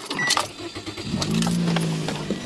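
A small car's engine starting off an ultracapacitor starter pack fitted in place of the lead-acid battery. After a few brief clicks it catches quickly and settles into a steady idle about a second in.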